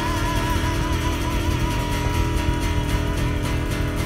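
Live blues band playing: sustained guitar notes over drums, with several cymbal hits in the second half. A wavering held note fades out just after the start.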